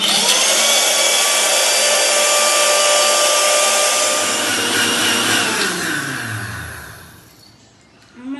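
Electric mixer grinder with a steel jar grinding bread slices: the motor starts abruptly and spins up, runs loud and steady for about five seconds, then is switched off and winds down, its pitch falling until it stops near the end.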